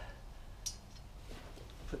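Faint handling of a removed powder-coated spoiler blade, with one light click about two-thirds of a second in.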